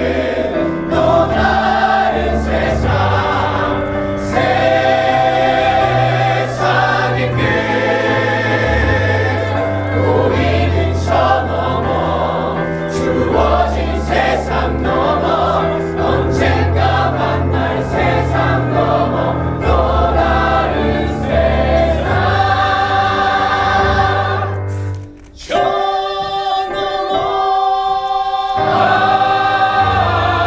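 Musical-theatre ensemble of men and women singing in full chorus over an accompaniment with a steady bass line. The music drops out briefly about 25 seconds in, then comes back on long held notes.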